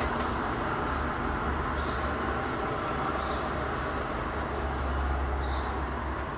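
Steady outdoor background rumble with faint, high bird chirps every second or so.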